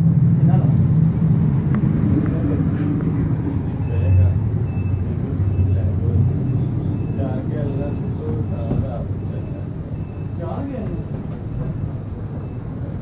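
Indistinct men's voices in a small room over a loud, steady low rumble.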